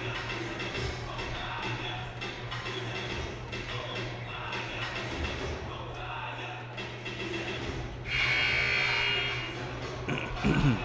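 Basketball arena during a break in play: music and a murmur of voices over a steady low hum. About eight seconds in, a loud scoreboard horn buzzes for about a second and a half, the signal that the break is ending.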